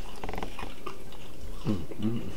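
A man chewing a mouthful of steak with his mouth open, with wet lip-smacking clicks early on and a short "mm" hum of enjoyment near the end.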